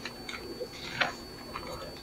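Bible pages being leafed through on a pulpit: faint paper rustling with a light click about a second in.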